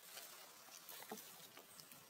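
Near silence: a faint outdoor background with a few soft scattered rustles and ticks.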